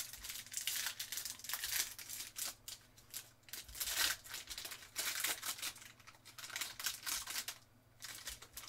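A foil trading-card pack wrapper being torn open and crinkled in the hands. It comes as a run of short crackly bursts that stops just before the end.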